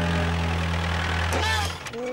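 Cartoon sound effect of a vehicle engine idling, a steady low drone that cuts off shortly before the end.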